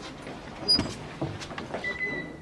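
A classroom door being opened: a few knocks and clicks of the handle and latch, the loudest a little before the middle, then a brief thin squeak near the end.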